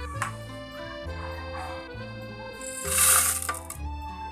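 Background music with a steady bass line. About three seconds in comes a short, loud rushing clatter as roasted rice and kencur pieces are tipped into a glass blender jar.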